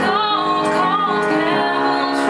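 A young woman singing, her held notes wavering slightly in pitch, over her own accompaniment on an upright piano.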